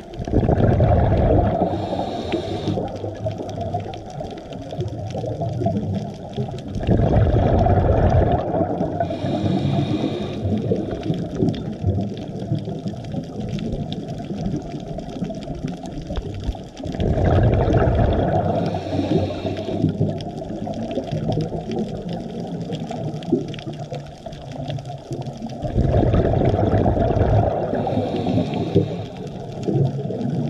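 Scuba diver breathing through a regulator underwater: about every nine seconds a loud rush of exhaled bubbles, each followed by a short hiss, four breaths in all, over a steady background of underwater noise.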